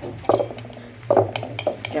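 A metal spoon stirring a thick mayonnaise dressing in a cut-glass bowl, with a quick run of sharp clinks against the glass in the second half.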